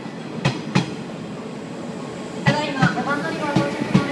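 JR 381 series limited express electric train arriving alongside the platform, its wheels clacking over rail joints: a pair of sharp clacks about half a second in, then more clacks in the second half as further cars pass.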